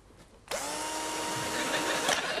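A handheld electric appliance is switched on about half a second in. Its motor spins up within a fraction of a second, then runs steadily with a high whine over a rushing hiss.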